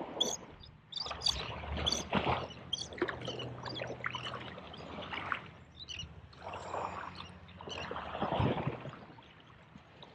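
Shallow sea water sloshing and splashing in irregular surges around a wading angler's legs, with a few sharp clicks in the first couple of seconds.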